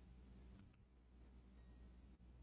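Near silence over a low steady hum, broken by two faint computer-mouse clicks a little over half a second in.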